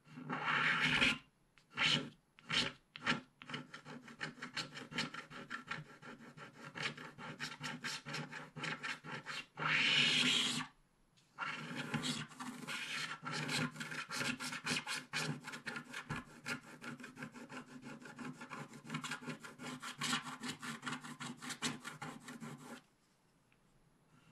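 Wooden stylus scratching the black coating off a scratch-art card: rapid short back-and-forth strokes, several a second, with a few longer strokes and one brief pause, stopping near the end.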